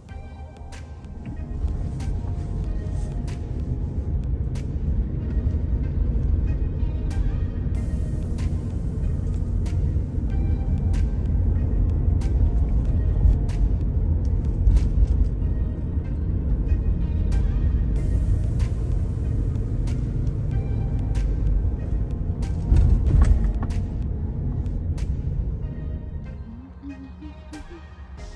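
Background music over the low rumble of a car driving along a road, which comes in about a second and a half in and runs steady with occasional knocks.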